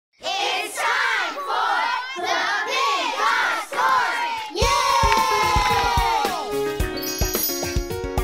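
Opening jingle of a children's animated series: a group of children's voices shouting and calling over one another for about four seconds, then a long note sliding down, then music with chimes and plucked notes.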